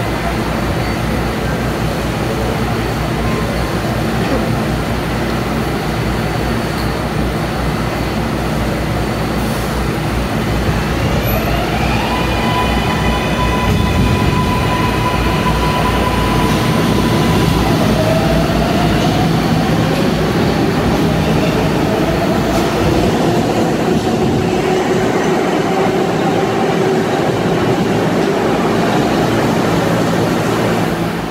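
A New York City Subway R188 7 train pulls out of an underground station, over a heavy rumble of cars and wheels. About a third of the way in, the motors' whine starts to rise, climbing in a few steps. A second rising whine runs through the latter half as the train gathers speed, and the deep rumble thins near the end as the train leaves.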